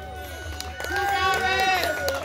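Voices calling out over a single held note lingering at the end of a live band's song; the note stops near the end.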